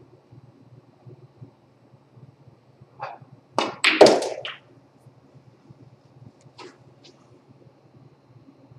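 A snooker cue tip strikes the cue ball with a sharp click. About half a second later comes a louder cluster of ball-on-ball knocks as the white hits a red and the red drops into the corner pocket. A couple of fainter clicks follow later as the white runs back up the table off the cushion.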